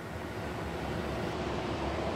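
Road traffic on a highway: a steady low rumble of passing vehicles with some wind, gradually getting louder.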